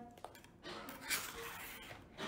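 A faint, pitchless in-breath of about a second, taken in a pause of a chanted Quran recitation just after a long held note ends.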